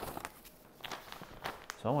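Folded paper being handled and set down, giving faint rustles and a few light crackles and taps.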